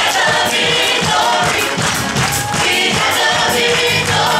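Gospel choir singing with a band behind them, over a steady drum beat.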